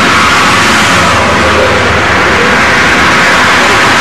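Loud, steady rush of wind and road traffic on a moving camera's microphone, with a low vehicle hum underneath.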